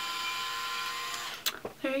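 InStyler Wet-to-Dry styler's motor-driven rotating heated barrel running with a steady whine as it is drawn through a section of hair, stopping about one and a half seconds in.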